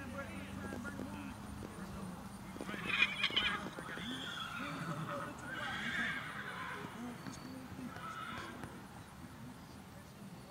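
A horse whinnying, the loudest call about three seconds in, with further calls following over the next few seconds.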